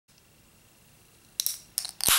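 Fingers working the pull tab of an aluminium soda can, a few sharp clicks in the second half as the tab is caught and lifted to open the can.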